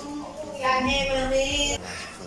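A high-pitched voice holding one note for about a second before it cuts off near the end, sung or squealed.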